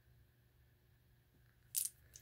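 Near silence, then about three quarters of the way in a single short, crisp handling noise as hands move over the packed box of bagged craft beads and charms.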